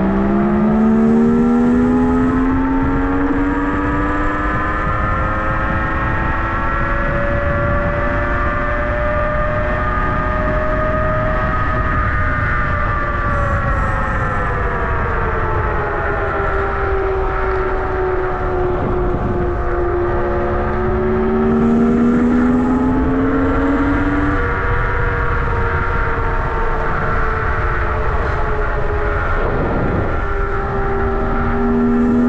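Nanrobot LS7+ electric scooter's hub motors whining while riding at speed. The pitch climbs for about the first twelve seconds as it speeds up, then sinks, and a second, lower whine rises briefly about twenty seconds in. Steady wind rush runs underneath.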